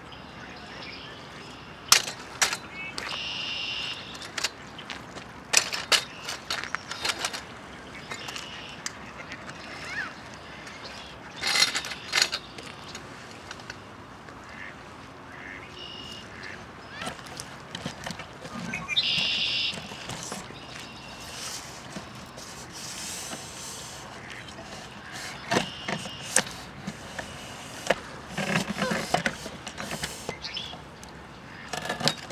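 Mallard ducks quacking several times, one longer call about two-thirds of the way through, with scattered sharp clicks and taps between the calls.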